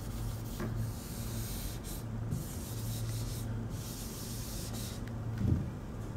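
Whiteboard duster rubbing across a whiteboard to erase marker writing, in several long hissy strokes with short pauses between them. A soft thump comes near the end.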